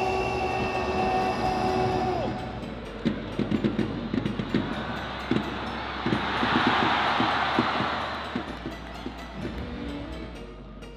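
A stadium announcer's long held shout over the public-address system, drawn out for about two seconds and dropping in pitch as it ends. Then comes a run of irregular loud knocks, and after that a crowd cheering, swelling for about two seconds before it fades.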